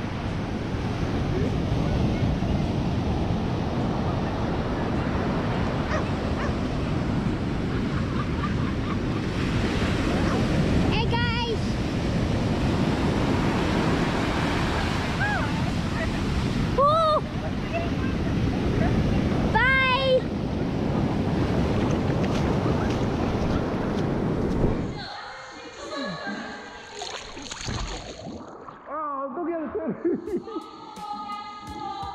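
Ocean surf breaking and washing up the beach, with wind on the microphone, and a few short high-pitched cries heard over it. About five seconds before the end this gives way to quieter music.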